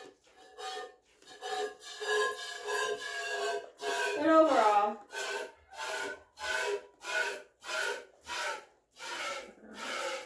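Goat being hand-milked: streams of milk squirting into a metal pail in a steady rhythm, about one and a half squirts a second, each a short hiss. About four seconds in there is a brief louder sound whose pitch falls.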